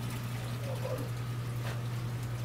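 Reef aquarium equipment running: a steady low hum with the soft wash of circulating water.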